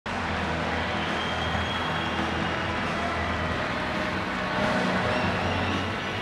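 Steady crowd noise filling a hockey arena, a dense even din with a low steady hum underneath.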